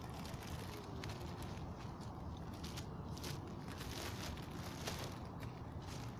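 Grey plastic postal mailer being handled and torn open by hand, with short scattered crinkles and crackles of the plastic over a steady low rumble.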